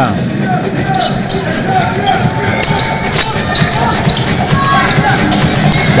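Basketball arena sound during live play: music playing over crowd noise, with the ball bouncing on the hardwood court.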